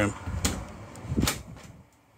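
Travel trailer's bathroom door being opened: two knocks about a second apart over a low rumble of movement.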